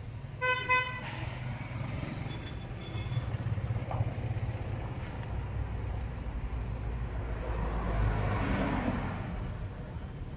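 A vehicle horn gives two short toots about half a second in, followed by a low traffic rumble that swells around eight to nine seconds in and then eases off.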